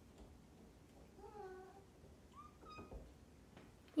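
Faint kitten meows: two short calls about a second apart, the second higher-pitched.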